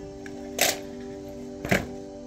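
Soft, sustained music holding a steady chord, with two sharp camera shutter clicks, the first a little over half a second in and the second near the end.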